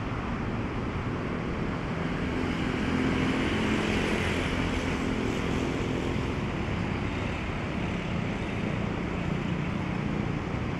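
A motor vehicle's engine passes, building up and fading away over several seconds, over a steady hiss of surf and wind.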